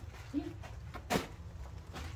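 A single sharp knock about a second in, over a low steady rumble.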